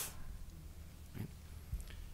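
Quiet room tone with a steady low hum, broken by a faint short sound about a second in and a soft low thump near the end.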